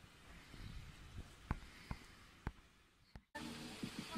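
Quiet background with four faint, sharp clicks spaced about half a second apart. A sudden cut near the end brings in louder outdoor background.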